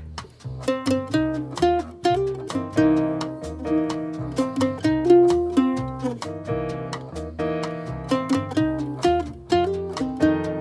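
Collings MT2 mandolin picking a bluesy single-note melody line with bent and double-stop notes, played over a backing track of bass and drums keeping a steady beat.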